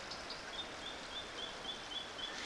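Shallow river running over a stony bed in a steady rush, with a small bird calling a quick series of short, high, evenly spaced chirps, about four a second, starting about half a second in.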